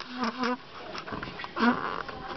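A person laughing in short bursts: a couple of quick laughs in the first half second and another near the end.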